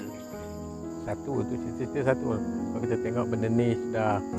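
Insects chirring steadily in a forest, with background music playing over them.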